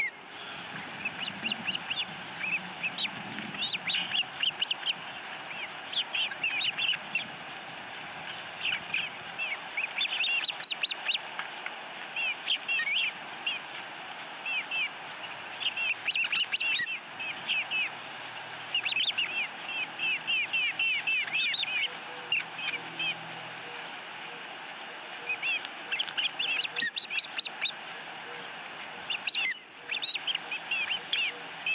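Ospreys chirping at the nest: runs of short, high, slightly falling chirps, repeated in bursts of a second or two with brief gaps between them.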